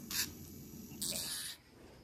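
Two short scratchy rustles of small objects being handled, one near the start and a longer one about a second in.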